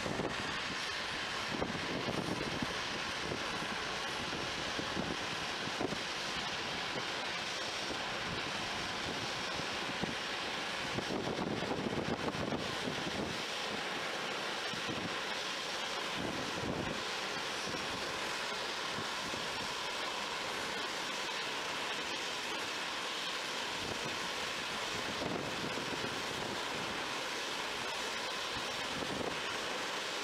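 Steady hiss of a Boeing 737's jet engines at taxi idle, with wind buffeting the microphone in uneven gusts, strongest about a third of the way in.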